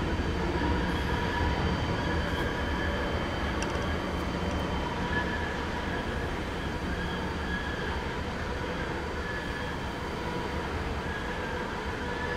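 Freight cars of a slowing CSX mixed manifest train rolling away at low speed: a steady low rumble with a thin, high wheel squeal that comes and goes.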